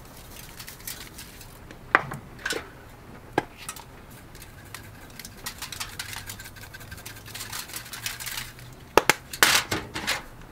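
Spice shakers being shaken over food on aluminium foil: light rattling ticks with a few sharp clicks, the loudest pair near the end, over a faint steady hum.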